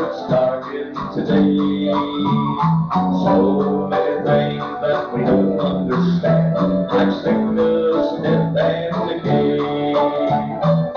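Live band music from a gospel song, with guitar and bass guitar playing steadily, heard from an old cassette tape recording.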